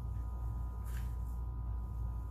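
A steady low hum with a faint high steady tone over it, under soft, dull sounds of hands kneading bread dough on a silicone mat, with a faint soft pat about a second in.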